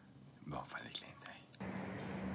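A man's short, quiet utterance, "Bon", then a steady hum with hiss that cuts in suddenly about one and a half seconds in.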